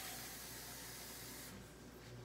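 Kitchen tap running into a cup, a steady hiss that stops about one and a half seconds in.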